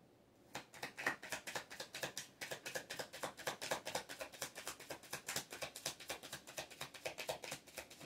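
A deck of oracle cards being shuffled by hand: a rapid, even run of soft card clicks, several a second, starting about half a second in and going on throughout.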